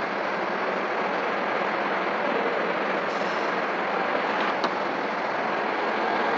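Steady rushing background noise with a faint low hum underneath, and one small click a little past the middle.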